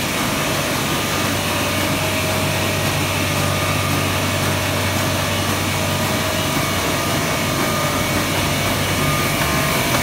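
Roland Rekord single-colour sheetfed offset press running: a steady mechanical hum with a constant whine over it.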